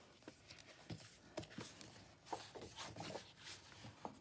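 A worn paperback cookbook being opened and its pages handled and turned: faint, scattered paper rustles and soft taps.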